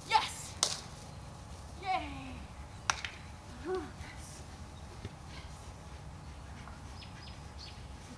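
A few short vocal calls, one falling in pitch, from the dog's handler, mixed with two sharp clicks during the first four seconds.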